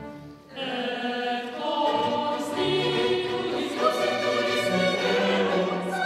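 Mixed choir and baroque string ensemble performing sacred music. After a brief pause, choir and strings enter together about half a second in and sing and play a sustained, full-voiced passage.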